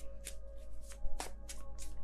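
Tarot cards being handled and shuffled by hand: an irregular run of short, crisp card flicks, the strongest about a second in. Soft background music with held tones runs underneath.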